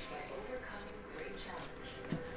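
Faint handling of a stack of baseball trading cards, slid and flipped one by one in the hand, over low room tone.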